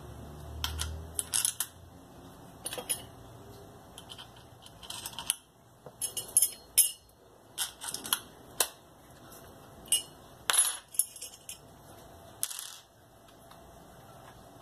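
Metal parts of an angle grinder clicking and clinking as it is handled and worked on by hand: irregular sharp clicks and taps, a few louder ones in the middle.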